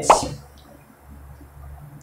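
A single short plop with a quickly falling pitch, followed by faint room tone.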